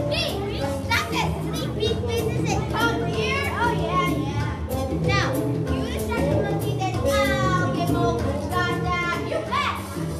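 A group of children shouting and whooping in high, rising and falling calls over recorded music with a steady bass line.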